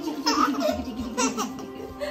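Laughter in quick repeated pulses that fall in pitch over about a second and a half, over steady background music.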